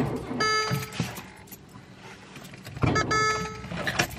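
Car failing to start on a dead battery: two short attempts, each well under a second, and the engine does not catch.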